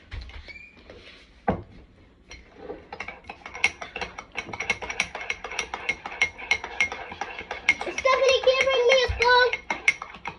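A metal spoon stirring in a ceramic mug, clinking against the side about three times a second for several seconds, after a single knock early on.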